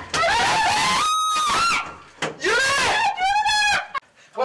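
High-pitched panicked screaming in two long screams. The second begins a little after two seconds in and breaks into a shaky warble before it ends.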